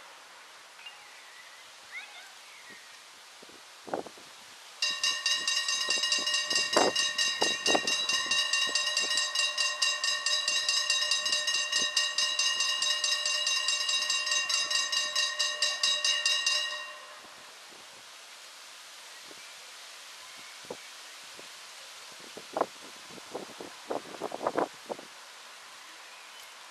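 Dutch level-crossing warning bell ringing in rapid, even strokes for about twelve seconds while the barriers lower, then stopping suddenly once they are down. A few small clicks sound before and after.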